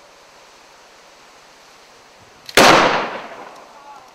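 Two fast-draw single-action revolvers fired almost at the same instant, heard as one sharp report about two and a half seconds in that fades over about a second.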